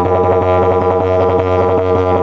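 Eucalyptus didgeridoo in the key of G# playing a continuous low drone, its overtones shifting every half second or so.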